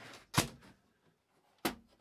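Two sharp knocks about a second and a quarter apart, the sound of hard objects being handled and set down at a work counter.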